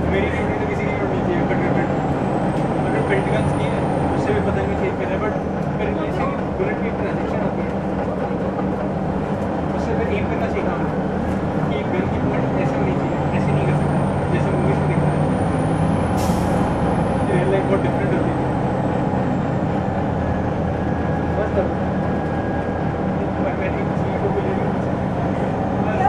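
Detroit Diesel Series 50 engine of a 2001 Gillig Phantom transit bus running under way, heard from on board, with a faint high whine that rises and falls twice and a brief hiss about two-thirds of the way through.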